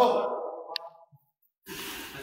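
A man's voice trailing off in a falling, breathy sigh. A very short high squeak follows, then the sound cuts out completely for about half a second before the room noise comes back.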